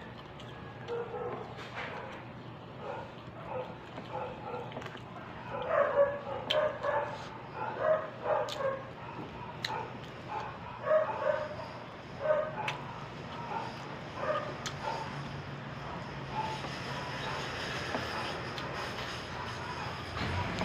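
A dog barking in repeated short bursts, loudest and most frequent in the middle of the stretch, over a faint steady hum.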